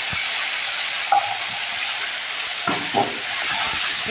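Potatoes, onions, tomatoes and green chillies sizzling steadily in oil in a metal pan, while a metal spatula stirring them scrapes and knocks against the pan, most clearly about three seconds in.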